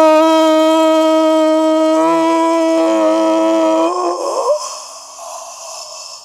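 A man's long shout held at one steady pitch for about four seconds, celebrating a goal. It then breaks off into a fainter noise that fades away.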